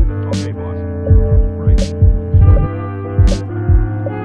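A hip-hop beat playing back from the Koala Sampler app at 80 BPM: a chopped sample from a 1970s film holds sustained tones under deep kick drums, with a sharp snare hit every second and a half.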